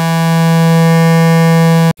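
Phase Plant software synthesizer playing one held note through its Overdrive distortion: a loud, rich tone with a dense stack of overtones. It swells slightly and cuts off abruptly near the end.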